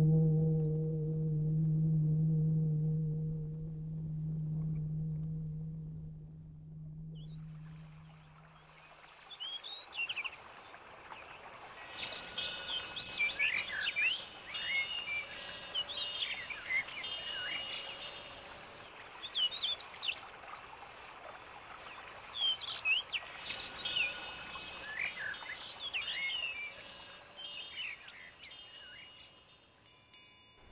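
A low, steady horn-like tone fades away over the first several seconds, then birds chirp and sing over a soft background hiss, in clusters of quick rising and falling calls.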